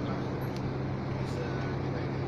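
Steady engine drone and road noise of a moving vehicle heard from inside the cabin, with a constant low hum.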